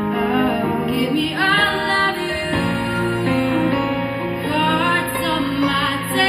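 Two young women singing a pop song as a duet into handheld microphones, over an instrumental backing.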